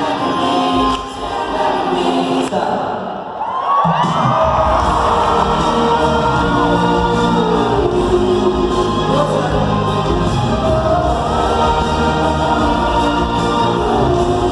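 Live pop concert music heard from the audience in an arena: sustained singing voices with a choir-like sound. About four seconds in, the voices glide upward, and a deep bass and the full band come in and carry on steadily.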